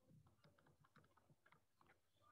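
Near silence with faint, irregular taps and scratches of a stylus on a touchscreen as a word is handwritten.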